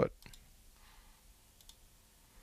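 Faint computer mouse clicks. There are about three quick clicks just after the start and two more about a second and a half in, made while deleting an output from a software list.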